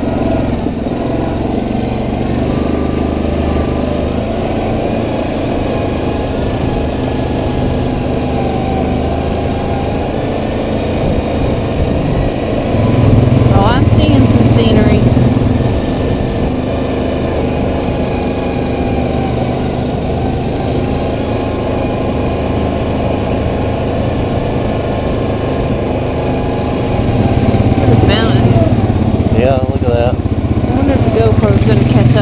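Yamaha Kodiak 700 ATV's single-cylinder engine running on the move, growing louder for a few seconds about halfway through and again near the end as the throttle opens.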